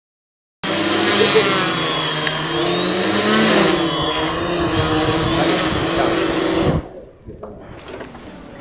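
Small electric motors of a homemade multirotor drone running at speed, a steady loud whir with a whine that rises about halfway through, cutting off suddenly near the end.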